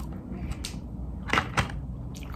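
A few light clicks and taps of a plastic fork and a plastic takeout container as barbecue skewers are picked out of it: one about two thirds of a second in, then two close together about a second and a half in.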